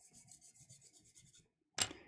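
Faint charcoal scrubbed across toned drawing paper in rapid short strokes, darkening the background. A short sharp click comes near the end.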